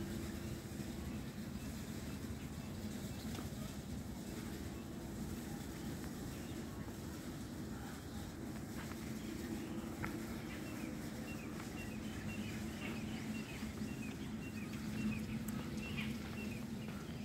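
Birds chirping in short, quick high notes, thickening from about halfway through, over a steady low hum.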